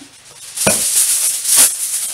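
Aluminium foil crinkling and rustling as a sheet is pulled off the roll, with a sharp knock about two-thirds of a second in and another loud crackle about a second and a half in.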